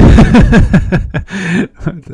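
A man laughing loudly: a run of falling laughs over the first second or so, then a breathy exhale.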